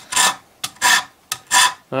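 Metal spokeshave scraping along a wooden axe handle in short push strokes, about three in quick succession, shaving the wood down.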